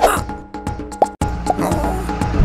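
Cartoon intro jingle: music with bubbly, plopping cartoon sound effects, opening with a falling pitch sweep. It breaks off sharply a little after a second in, and a new stretch of music with plucky notes starts.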